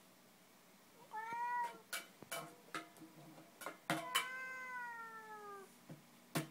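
A few sharp taps of a baby's plastic spoon on a makeshift drum, with two high drawn-out calls, a short one about a second in and a longer one that slowly falls in pitch.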